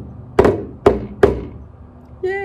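Plastic toy drum struck with wooden drumsticks: three separate hits, each with a short ring.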